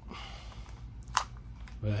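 Handling noise as a servo connector and its wires are pushed against the rover's plastic lid, with one sharp click a little over a second in. The connector is catching because the hole in the plastic is a little too small for it.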